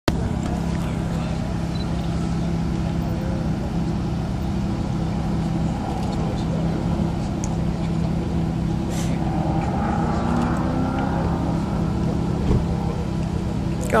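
Audi R8's engine idling steadily while the car waits stationary at the start line, a low even hum that does not change in pitch.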